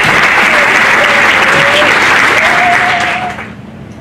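Audience applauding, with some voices over it; the applause dies away about three seconds in.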